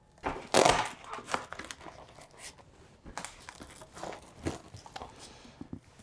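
Velcro straps being ripped open and pressed shut and the fabric of a collapsible softbox rustling as an LED panel is strapped into its back. It comes as a series of short rips and scuffs, the loudest about half a second in.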